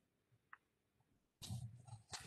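Near silence with one faint click, then about a second and a half in a low voiced sound from a person, not words, like a drawn-out hum or 'uh'.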